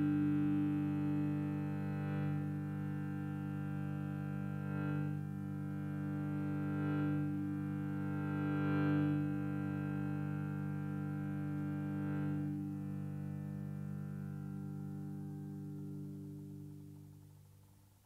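A sustained instrumental drone holding one steady chord, swelling slightly every two to three seconds, then fading out over the last few seconds.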